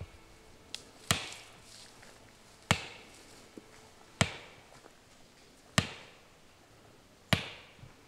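Hammer blows struck at a steady pace, about one every one and a half seconds, five in all, each a sharp strike with a short ring after it.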